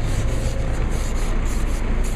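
Hand ice scraper scraping frost off a car windscreen in quick back-and-forth strokes, over a steady low rumble.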